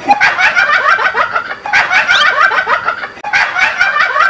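Rapid clucking calls like a group of chickens, in repeating bursts of quick notes about every second and a half.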